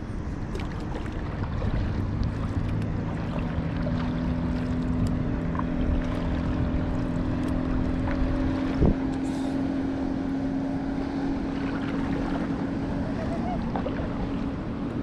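Motorboat engine running with a steady drone over water, with wind buffeting the microphone and a single knock about nine seconds in.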